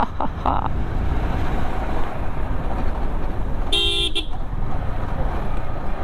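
Steady rumble of a Yamaha R15M's single-cylinder engine and road wind at low riding speed, with one horn blast about half a second long a little past the middle.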